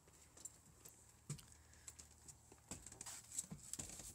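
Faint, scattered footfalls and knocks of someone climbing the steps into a small bus and walking inside, coming more often and a little louder in the second half.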